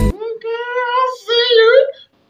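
Music with a heavy bass line cuts off abruptly at the very start, and a high, unaccompanied singing voice follows, holding two long notes, the second wavering upward near the end.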